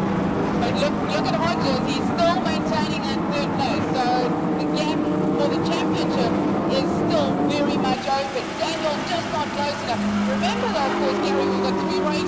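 Engines of a pack of Volkswagen Polo race cars running at speed on the circuit: a steady, loud drone whose pitch shifts about eight seconds in and again near ten seconds, with background voices mixed in.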